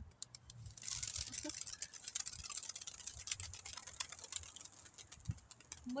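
A flock of domestic pigeons taking off, their wings making a rapid, dense clatter that starts about a second in.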